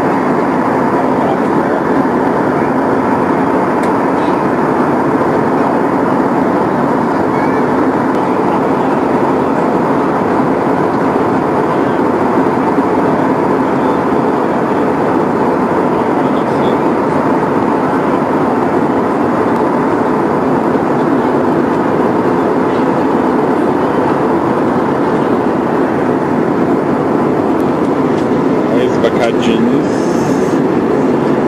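Steady cabin noise of a jet airliner in flight, heard from a window seat inside the cabin: a constant, even roar with a faint hum running through it.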